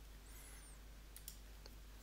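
Near silence with a steady low hum, and a couple of faint computer mouse clicks a little over a second in.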